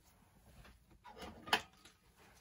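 Faint handling noise: a few soft knocks and rustles as things are moved about on the work table.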